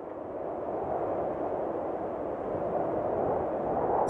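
A rushing noise with no tones in it, swelling steadily louder.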